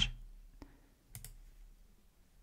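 A few faint clicks from a computer pointing device: a single click, then a quick pair about half a second later.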